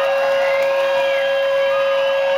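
Live rock band's amplified sound holding one steady ringing tone at the close of a song, with faint wavering crowd noise over it.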